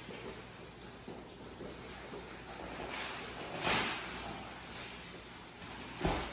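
Shuffling footsteps and the rustle and scrape of a large plastic-wrapped cardboard box being carried and handled, with one louder brief swish a little past halfway.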